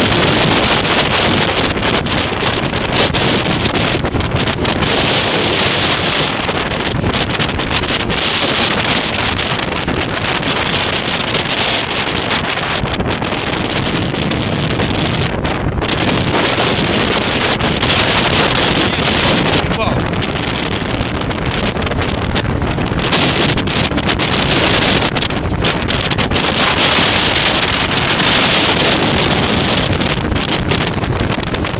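Wind blasting on the microphone atop a moving BTR-80 armoured personnel carrier, with the vehicle's engine and tyre noise underneath; a loud, steady rush throughout.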